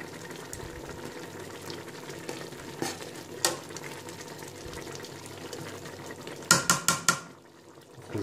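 Pot of rice and chicken simmering in stock for polao, bubbling steadily while a metal spoon stirs through it. The rice is cooking until the water is absorbed. About six and a half seconds in, the spoon knocks against the pot four or five times in quick succession.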